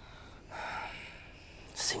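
A person's breathy exhale lasting about half a second, then the start of a spoken word near the end.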